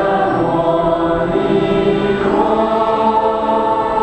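A choir singing a slow Buddhist hymn in long held notes, moving to a new note about two seconds in.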